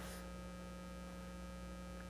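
Faint, steady electrical hum, a few fixed tones over a low noise floor, as from a sound system's mains hum.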